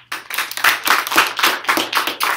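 Audience applause: many hands clapping, loud and dense, breaking out suddenly right at the start.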